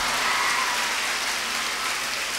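Audience applauding in a hall: a dense, steady patter of many hands clapping, easing off slightly toward the end.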